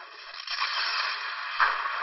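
Two layered downloaded explosion sound effects playing back: a long, thin-sounding blast, with a second, sharper blast coming in about one and a half seconds in.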